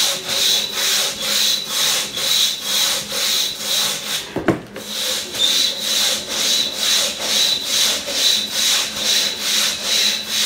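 Crosscut saw worked single-handed (single buck) through a log, rasping back and forth in an even rhythm of about two strokes a second. The strokes stop briefly about four and a half seconds in, with one sharp knock, then pick up again.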